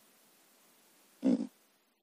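One short voiced sound, about a third of a second long, about a second and a quarter in. The rest is near quiet.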